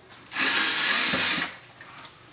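Cordless drill driver run for about a second, backing out a screw from the cooktop's heating-element mount.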